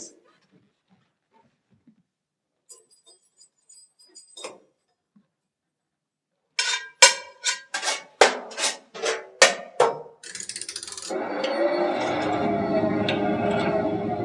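After a few seconds of near silence with faint clinks, a run of sharp percussive strikes with a short ring comes at an uneven pace, about three a second. It gives way near the end to a steady, dense clattering din with humming tones: stage sound effects of factory machinery starting up.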